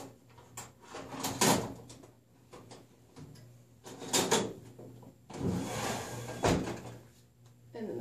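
X-ray wall stand's bucky tray being handled while the cassette in it is turned to portrait: clacks about a second and a half in and again near four seconds, then the tray slides shut with a rasp that ends in a knock.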